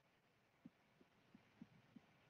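Near silence, with a few faint soft taps, four in about two seconds, of a stylus writing on a tablet screen.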